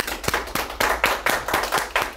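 A small group of people applauding: several pairs of hands clapping quickly and out of step.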